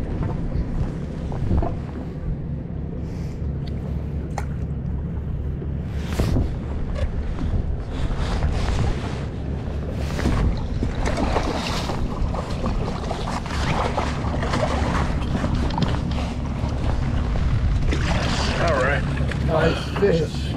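Boat engine idling with a steady low hum, wind buffeting the microphone, a couple of sharp knocks and indistinct voices.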